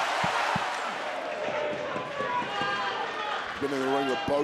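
Large arena crowd cheering, dying down after about a second and a half, with a few dull low thumps near the start. A man's voice comes in toward the end.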